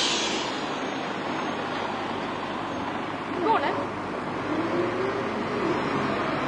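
City diesel buses running past in street traffic, with an air hiss that fades out within the first half second. A brief squeal comes about three and a half seconds in, and a steady whine that rises slightly sets in near the end as a bus pulls away.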